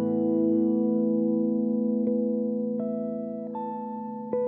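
Two electric jazz guitars playing a slow passage. Held chords ring and slowly fade, with new single notes plucked about two seconds in and twice more near the end.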